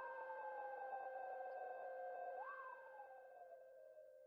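Synthesized electronic outro sound: steady held tones under a sliding tone that falls slowly in pitch, swoops briefly up about halfway through, then falls again, fading slightly toward the end.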